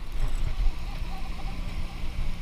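Low wind and handling rumble on an action-camera microphone while a baitcasting reel is cranked to retrieve the line.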